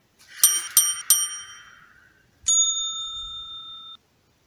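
Subscribe-button animation sound effect: a swoosh with three quick chime pings in the first second. About two and a half seconds in, a single ringing ding follows; it fades slowly and cuts off suddenly near the end.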